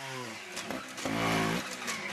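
Trials motorcycle engine revving in short blips. Its pitch falls off early on, then it is blipped again about a second in.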